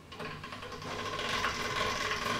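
Hand-cranked steel pasta machine turning, its gears and rollers giving a steady clicking whirr as a sheet of pasta dough is rolled through. It starts just after the beginning.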